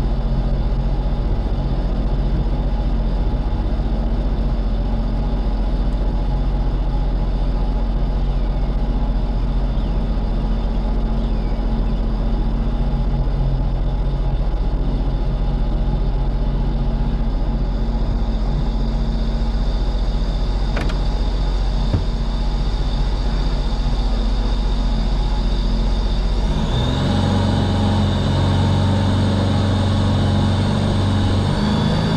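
Supercharged engine of a Sea-Doo Speedster 150 jet boat idling steadily, then picking up speed near the end with a rising whine as the boat gets under way. A couple of small clicks come a little past the middle.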